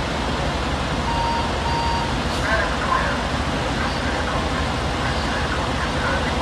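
Steady traffic and car-engine noise, with two short high beeps just over a second in. Faint voices are heard later on.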